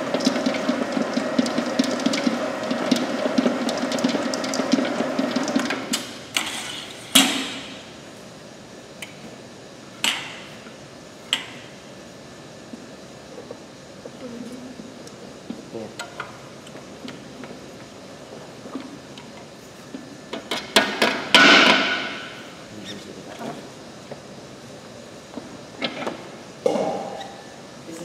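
Avantco MX30 commercial planetary mixer running with a steady hum as it blends the chocolate bar mixture, switched off about six seconds in. After that, scattered sharp metallic clanks and knocks from the stainless steel bowl and wire bowl guard being handled, with a cluster of louder clanks about three-quarters through.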